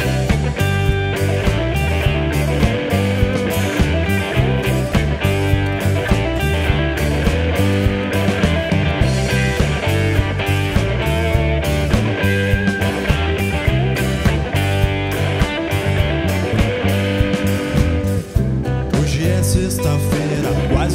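A live band playing a blues-tinged rock song with electric and acoustic guitars, bass, keyboard and drums, driven by a steady beat. There is a brief drop in level near the end.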